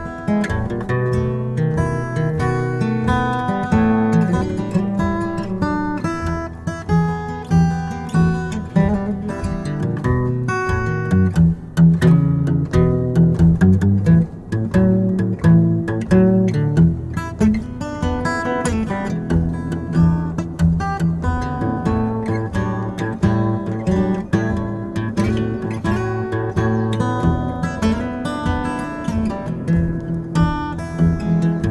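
Steel-string acoustic guitar played solo, a blues in F, with plucked and strummed notes over a steady bass line.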